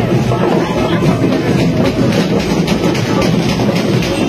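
A group of Kerala chenda drums beaten fast with sticks: a loud, dense, unbroken run of rapid strokes.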